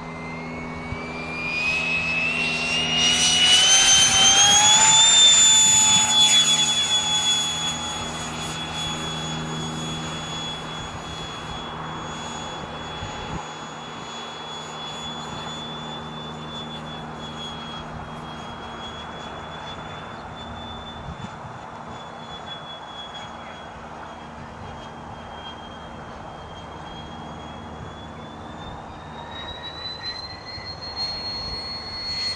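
Electric ducted-fan RC jet (Tamjets TJ80SE fan driven by a Neu 1509/2Y motor) spooling up to full power for take-off, its high whine rising in pitch and loudest about four to six seconds in. It then holds a steady high whine in flight, fainter, and the pitch rises again near the end.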